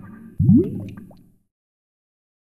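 Logo-intro sound effect: a low drone fades, then about half a second in a sudden loud rising bloop with a few clicks dies away within about a second.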